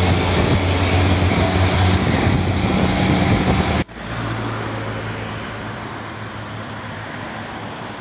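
Heavily loaded dump truck's diesel engine running with a loud, steady low drone as it climbs past at close range. About four seconds in the sound cuts off abruptly, and a quieter, steady engine hum of oncoming traffic follows.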